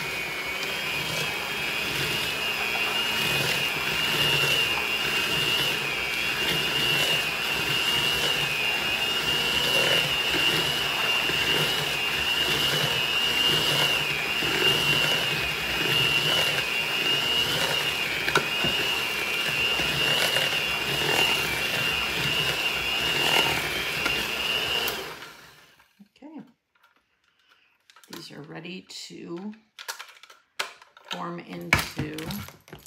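Electric hand mixer running steadily, its beaters working crushed Oreos into cream cheese in a bowl, with a high motor whine. It switches off abruptly about 25 seconds in.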